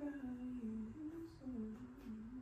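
A woman softly humming a slow tune, holding each note and stepping up and down between them.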